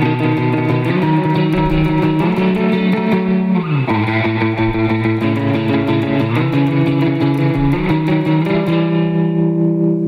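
Electric guitar, a Fender Jaguar, played through a small amp in the surf style: a run of rapidly picked notes stepping through a B dominant 7th pattern (B, D-sharp, F-sharp, A), with a slide down in pitch about four seconds in.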